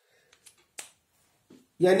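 A few faint, short clicks in a pause, the clearest a little under a second in, then a man's voice starting near the end.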